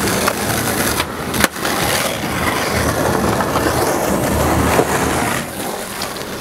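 Skateboard wheels rolling on concrete, with a few sharp clacks of the board, the loudest about a second and a half in.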